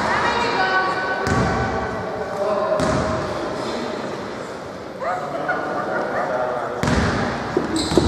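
Players' voices calling out on an indoor basketball court, with a basketball bouncing on the hardwood floor a few times.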